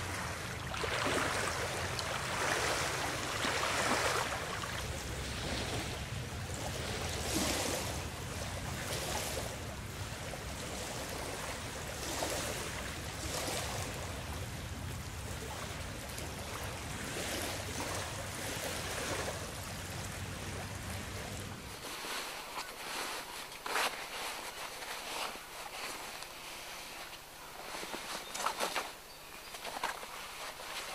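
Small waves on a lake lapping and splashing in uneven swells, over a low wind rumble. About two-thirds of the way through, the rumble cuts out and the water goes on more quietly, with a few short, sharper sounds near the end.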